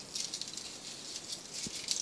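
Faint crinkling and rustling of folded paper bound with red thread as fingers roll and press it into a small coil, with a soft bump about one and a half seconds in.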